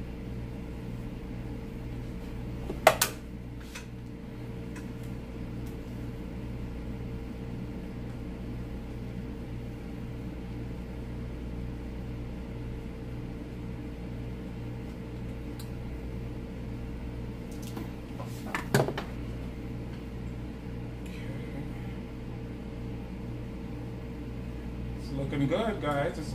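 Steady low mechanical hum with a few fixed tones underneath, broken by two short sharp clicks, one about three seconds in and one near nineteen seconds; a voice starts just before the end.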